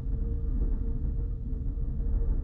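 Steady low rumble with a faint, even hum above it: background room noise.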